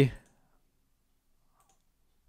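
The last syllable of a spoken phrase, then quiet room tone with one faint click at the computer about one and a half seconds in.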